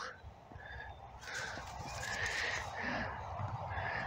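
Gloved fingers rubbing soil off a small dug-up devotional medal: quiet, intermittent soft scratching.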